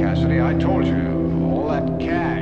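Film soundtrack: a voice speaking over a steady, low held drone.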